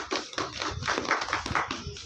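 Scattered hand clapping from a small group of people, a fast irregular patter of claps.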